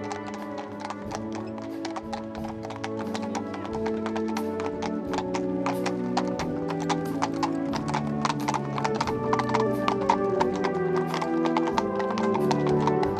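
Horses' hooves clip-clopping on asphalt as a two-horse carriage and mounted riders walk past, the hoofbeats growing louder towards the end as the horses come close. Music with long held notes plays throughout.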